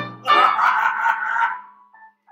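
Music: the last of a run of repeated piano chords rings out, and a held higher note comes in just after it and fades away by about a second and a half in.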